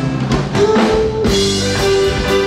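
A live band playing a Ukrainian song: a drum kit strikes several times over sustained electric guitar and keyboard notes.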